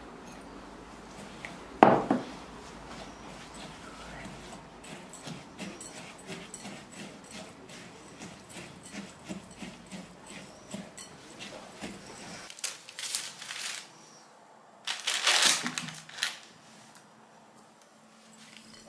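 Silicone spatula mixing crumbled cocoa biscuits with melted butter in a glass bowl: many small irregular scrapes and clicks. There is a single sharp knock about two seconds in, and louder scraping bursts near the end.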